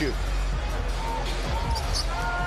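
Basketball being dribbled on a hardwood arena court, with arena music and crowd noise behind it.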